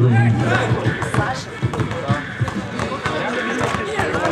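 Basketball being dribbled on a hard outdoor court during a game, a quick irregular run of bounces, with men's voices around the court.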